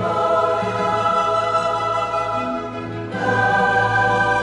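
Choral music: a choir singing long sustained chords over a steady low held note, moving to a new, louder chord about three seconds in.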